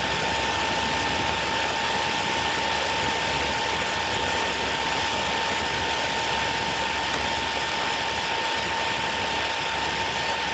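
Steady static hiss with a thin constant tone, noise on an online call's audio line while the student's voice is not coming through.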